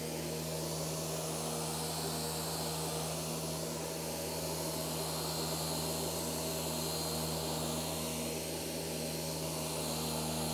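Random orbital sander with 150-grit paper running steadily on a Douglas fir floor, cutting through the polyurethane finish over a burn mark, with a dust extractor pulling air through its hose: a constant motor hum under a hiss.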